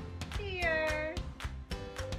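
A toddler gives one drawn-out, high-pitched happy squeal lasting under a second, over background music with a steady beat.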